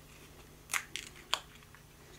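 A few short clicks and scrapes, about three in a row near the middle, from small craft supplies being handled as a jar of mica powder is picked up.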